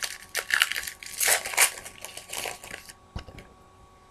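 Foil wrapper of a trading-card pack crinkling and tearing in a run of crackly bursts, stopping about three seconds in.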